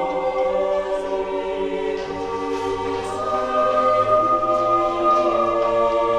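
Choral music of sustained, held voices in slow chords, the harmony shifting about two seconds in.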